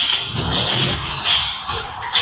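Action movie trailer audio played through Baseus Eli Fit Open open-ear earbuds: a loud, dense wash of sound effects with music under it, dipping briefly near the end.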